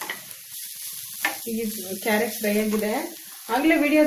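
Bread frying in a pan, sizzling steadily, with two sharp clicks of a spatula against the pan in the first second or so.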